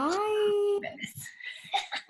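A young girl's long, drawn-out "byeee" that rises in pitch and is then held for most of a second, followed by a few faint short vocal sounds.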